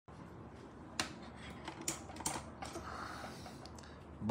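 A few sharp taps and knocks from fingers handling the phone that is recording, the loudest about a second in and a couple more around two seconds, over faint room background.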